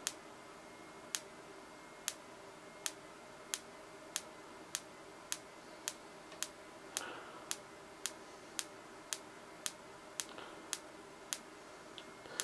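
Xenon flash tube in a high-voltage photoflash circuit, triggered by an SCR from a unijunction oscillator, firing with a sharp tick at each flash. The ticks quicken from about one a second to nearly two a second over the first few seconds, then keep an even beat.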